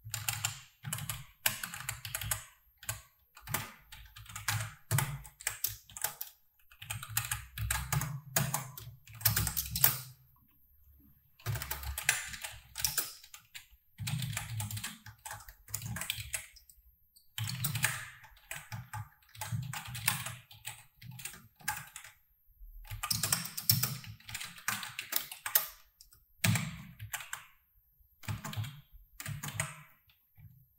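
Typing on a computer keyboard: fast runs of keystrokes broken by short pauses.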